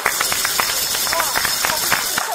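Scattered applause from a crowd of listeners, with many irregular claps and voices mixed in.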